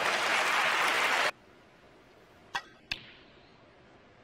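Audience applause that cuts off abruptly about a second in. Then two sharp clicks of snooker balls a fraction of a second apart: the cue striking the cue ball, then the cue ball hitting another ball.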